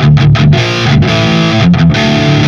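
Electric guitar with high-gain distortion played through a Flamma FX200 multi-effects unit set to a 5150 amp model and the 5153 4x12 cab simulation: a loud rhythm riff of chords with brief breaks between them.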